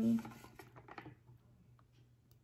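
Faint scattered clicks and light scraping from a clay-cutting tool trimming a clay pot on a small toy pottery wheel.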